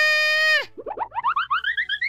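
A cartoon character's high, held scream that breaks off just over half a second in, followed by a comic sound effect of quick rising chirps, about eight a second, climbing steadily in pitch as the character shoots upward in fright.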